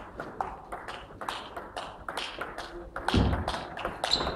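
Table tennis rally: the celluloid ball clicks sharply and quickly against the rackets and the table, with a heavier thump about three seconds in.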